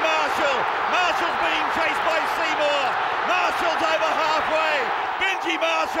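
A television commentator calling a rugby league intercept run in a raised, high-pitched voice, over a steady stadium crowd noise.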